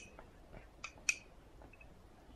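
A metal spoon clinking against the inside of a cup while scooping baby food: two short ringing clinks about a quarter of a second apart near the middle, with a fainter tap before them.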